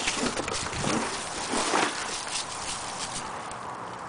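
Irregular rustles and light knocks of a cardboard shipping carton and its styrofoam packing strips being handled as the box is opened.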